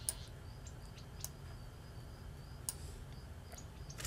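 Four faint, widely spaced computer mouse clicks over a low steady hum, the first and loudest right at the start.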